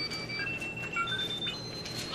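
Fingerlings dinosaur toys being switched on, giving a string of short, high electronic beep tones that step between different pitches.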